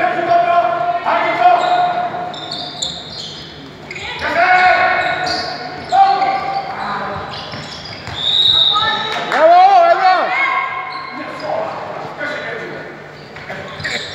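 Players and spectators shouting calls across an indoor handball court, with a handball bouncing on the wooden floor, all echoing in a large sports hall.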